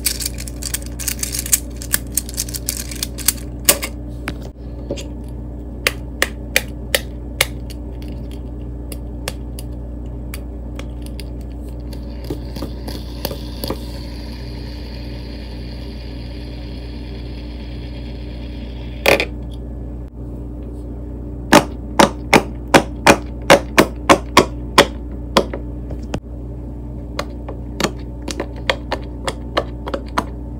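Plastic fidget toys handled close to the microphone: scattered clicks as a plastic infinity cube is folded, a fidget spinner whirring for several seconds in the middle, then a fast run of loud sharp clicks, about three a second, near the end.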